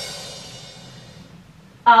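A comedy drum sting ('ba-dum-tss') follows a punchline, and here its crash cymbal rings and fades away over about two seconds. A voice comes in just at the end.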